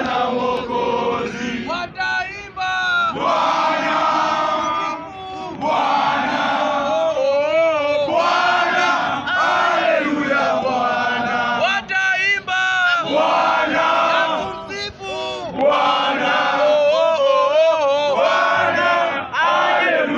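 A group of young male voices chanting and singing loudly together in unison, phrase after phrase with brief dips between.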